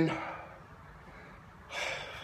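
A man drawing a short, audible breath near the end, after a quiet stretch.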